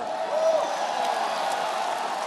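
Basketball arena crowd cheering and applauding in a steady wash of noise, with a single whoop about half a second in.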